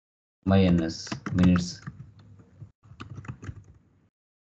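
Computer keyboard being typed, a run of separate key clicks, with a brief voice in the first half.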